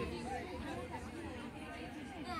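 Faint, indistinct chatter of several people's voices, no words clear.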